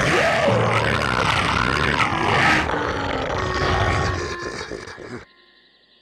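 Cartoon sharptooth dinosaur growling and roaring for about five seconds, dying away near the end. The growls stand for words: a taunt that is subtitled on screen.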